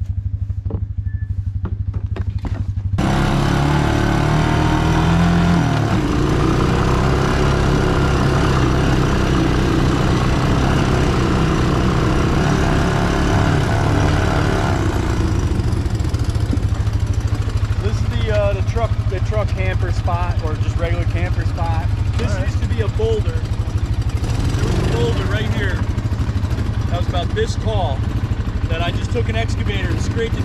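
Honda 200 three-wheeler's single-cylinder four-stroke engine idling, then running under way on a dirt trail from about three seconds in, with a steady dense noise over it.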